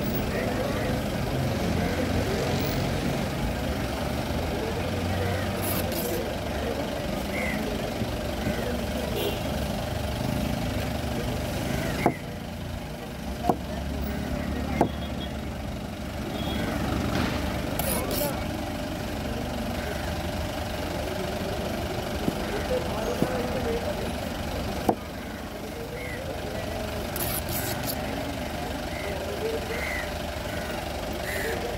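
Steady low running of an idling engine, with a few sharp knocks of a knife striking a wooden chopping board as tuna is cut into pieces, and background voices.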